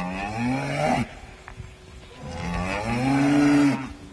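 Cow mooing: two long moos that rise and then fall in pitch, the first ending about a second in, the second starting a little after two seconds and ending shortly before the end.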